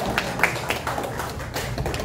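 Scattered footsteps and shoe taps on a hardwood dance floor: irregular sharp clicks, several a second.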